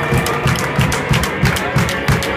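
Live band playing: a drum kit keeps a steady quick beat under keyboards and guitar.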